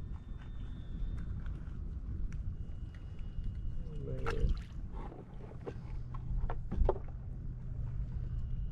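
Water lapping against a kayak's hull as a low steady rumble, with scattered small clicks and knocks of fishing tackle being handled; one sharper knock comes near the end.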